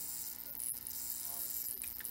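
Steady, fairly faint electrical buzz and hum from a running homemade cathode ray tube rig, a ZVS flyback high-voltage driver feeding a glowing discharge in an evacuated test tube.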